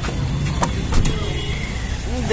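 Car on the move: a steady low engine and road rumble, with two short knocks about half a second and a second in.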